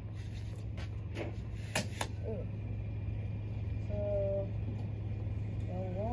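A few sharp clicks, about one and two seconds in, from a metal tape measure as its hook is tried on the end of a wooden farm wagon and slips off. They sit over a steady low hum, with a brief vocal sound in the middle.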